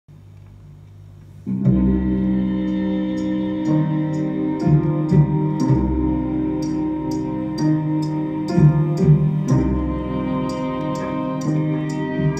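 A Thai song's instrumental intro played from a Columbia vinyl LP: about a second and a half of quiet lead-in, then the band comes in with a steady high percussion tick about two to three times a second over sustained low notes.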